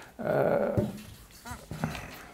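Felt whiteboard eraser rubbing across the board in a short wipe, followed by a couple of brief squeaks near the end.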